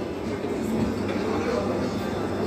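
Steady background noise of a busy restaurant, with indistinct voices in it.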